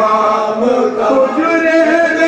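Men chanting a marsiya, an Urdu elegy, in long held notes that shift slowly in pitch.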